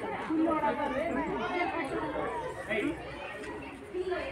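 Crowd chatter: many people talking at once, their voices overlapping with no single clear speaker.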